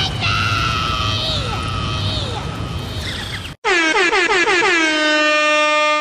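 Meme-edit sound effects: first a noisy stretch with voice-like falling tones, then, cut in sharply about three and a half seconds in, a loud horn blast whose pitch drops briefly and then holds.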